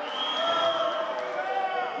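Raised voices holding long, drawn-out calls, several overlapping at once.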